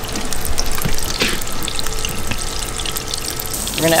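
Olive oil with a pat of butter sizzling in a hot non-stick pan on a propane burner: a steady hiss with scattered crackles as the fat heats before the fish goes in.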